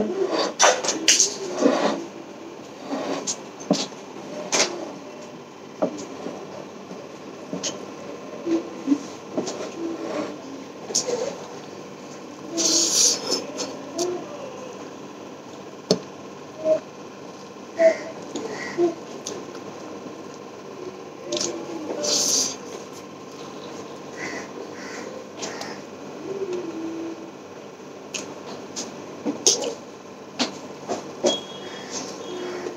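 Eating by hand: fingers squishing and mixing rice with vegetable curry on a plate, with mouth sounds of eating and a scatter of short, sharp clicks and a few louder bursts.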